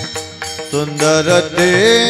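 Warkari kirtan music: a voice singing with sliding, ornamented pitch over steady held drone notes, with small hand cymbals. The sound dips briefly near the start, and the voice comes back in strongly a little under a second in.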